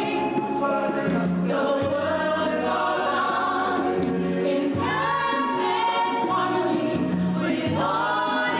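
A choir singing with orchestral backing in a live stage-musical number, recorded from the audience, with held chords and a slow-moving bass line.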